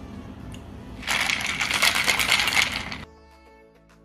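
Ice rattling hard in a cocktail shaker (mixing glass capped with a metal tin) as it is shaken for about two seconds, stopping abruptly, after a liquid is poured over the ice in the first second.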